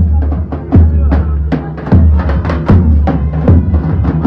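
Davul, the big Turkish double-headed bass drum, beaten in a street procession: a quick, uneven run of heavy booming strokes over the noise of a crowd.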